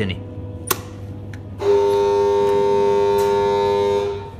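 A single click, then about a second and a half in a loud, steady alarm horn on a power-plant control desk starts sounding at one constant pitch, cutting off abruptly at the end.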